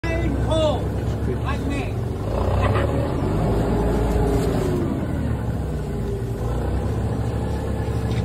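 A motor running steadily with a low hum.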